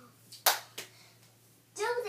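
A single sharp smack of hands about half a second in, with a couple of fainter taps just before and after it.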